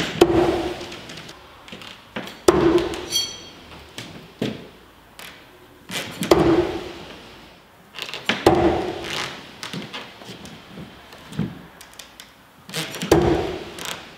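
Throwing knives hitting a wooden log-round target: five heavy thunks a few seconds apart, each with a short boomy echo off the plywood room. There is a brief metallic ring about three seconds in. The throws are made from beyond the usual distance with the arm fully extended.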